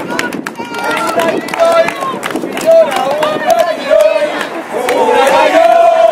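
Crowd of marchers shouting and chanting together, with scattered handclaps; the voices grow louder near the end.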